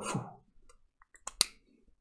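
A few short, sharp clicks in a quiet pause, the sharpest about a second and a half in.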